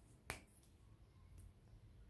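A chocolate bar snapped by hand: one sharp crack about a third of a second in, then a few faint ticks as pieces are handled, against near silence.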